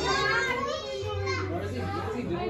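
Children's voices chattering in the background, high-pitched and unbroken, with no clear words.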